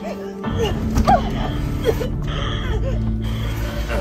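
Horror film score with a low sustained drone that comes in about half a second in, over a wounded man's short pained gasps and groans.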